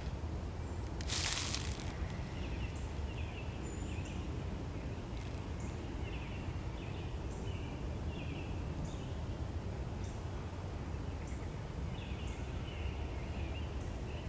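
Outdoor woodland ambience: a steady low rumble, a short rustle about a second in, and faint short bird chirps repeating roughly once a second.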